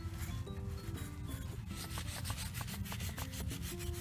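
Felt-tip markers scribbling back and forth on paper, a run of quick scratchy strokes, as a picture is coloured in. Background music with a bass line and a stepping melody plays under it.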